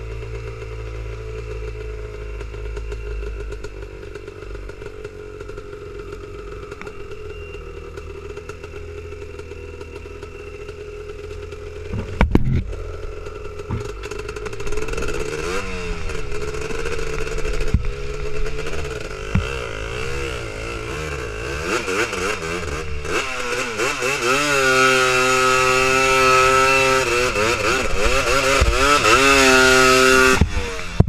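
Honda TRX250R quad's two-stroke single-cylinder engine running at low revs, with a sharp knock about twelve seconds in. It is then revved up and down, and near the end it is held at high revs at full throttle, the loudest part.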